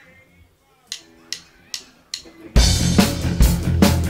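Four stick clicks about 0.4 s apart counting in, then a live rock band (drum kit, electric guitars and keyboard) starting the song together, loudly, about two and a half seconds in.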